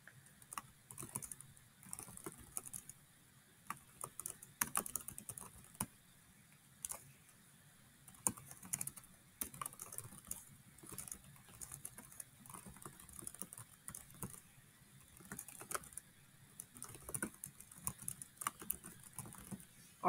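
Faint typing on a computer keyboard: key clicks in irregular runs with short pauses between them.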